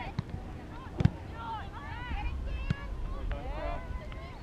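Voices calling and shouting across a soccer field, with low wind rumble on the microphone. A single sharp knock stands out about a second in, with fainter clicks later.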